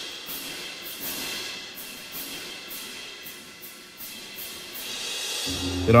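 Sampled orchestral piatti (clash cymbals) and cymbals from the Rhapsody Orchestral Percussion library playing the accent part: a quick run of short crashes, about three a second, then a cymbal swell building near the end.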